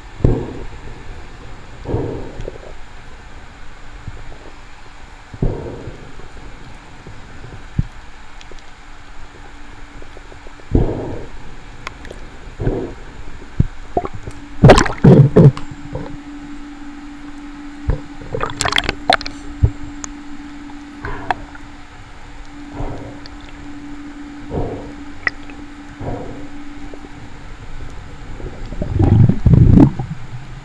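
Water sounds picked up by a waterproof action camera on a free-diving spearfisher: muffled thumps and sloshing every couple of seconds, with a faint steady hum underneath. Sharper splashing comes midway as he breaks the surface, and a loud rumbling slosh comes near the end as he goes back under.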